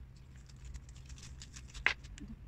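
Small cabinet fittings clicking as they are handled and set down on the floor: a run of light ticks, with one sharper click near the end.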